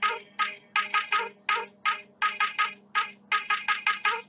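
Electronic dance music playing: a sparse, syncopated pattern of short, sharp pitched notes with brief silences between them.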